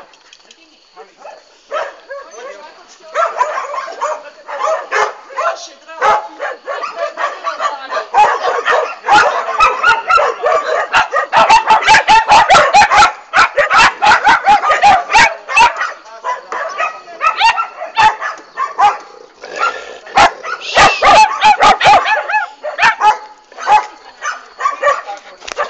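A dog barking and yapping over and over in short sharp calls. The barks come in fast runs of several a second, thickest about halfway through and again a few seconds before the end.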